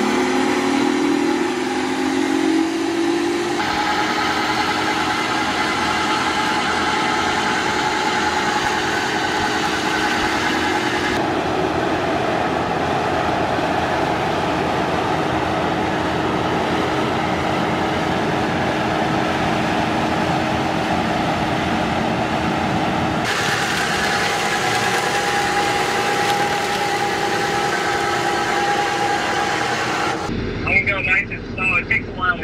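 Kubota compact track loader's diesel engine running under load with its hydraulic Vail X Series brush cutter spinning, mowing down standing corn. A rising whine in the first few seconds as the cutter comes up to speed, then a steady mechanical drone.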